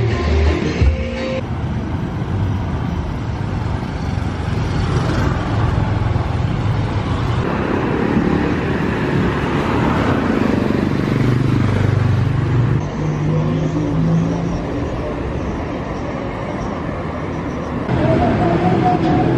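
City street traffic, with a motorcycle engine passing close by in the middle.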